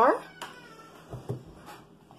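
A short, sharply rising pitched cry right at the start, followed by a faint, slowly falling thin tone and a few soft low knocks.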